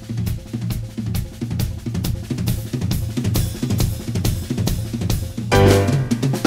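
Jazz drum kit playing a busy passage of snare, bass drum, rimshots and cymbals over a moving bass line. The rest of the band comes back in with a loud pitched entry about five and a half seconds in.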